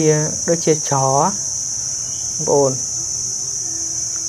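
Steady, high-pitched insect chorus droning without a break, with a man's voice speaking briefly twice over it.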